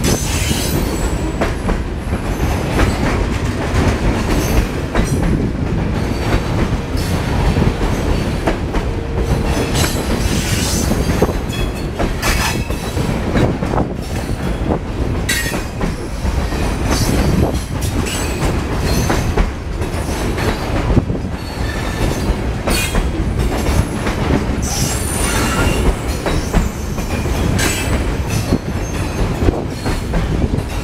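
Refrigerated boxcars of a freight train rolling past at close range: a steady rumble of steel wheels on rail, with repeated clacks over the rail joints and brief high squeals from the wheels.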